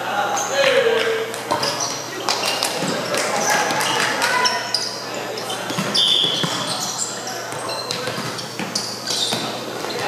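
Echoing gymnasium hubbub during volleyball play: many voices talking and calling out, with frequent sharp thumps of volleyballs being hit and bounced on the wooden floor.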